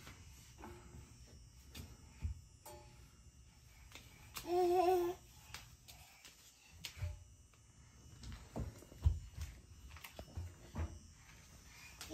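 A young child's short, wavering sung vocal sound near the middle, among soft thumps, knocks and rustling as clothes are handled and put into a front-loading washing machine's drum.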